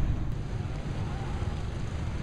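Steady low outdoor rumble of wind on the microphone and distant street traffic, with no distinct sounds standing out.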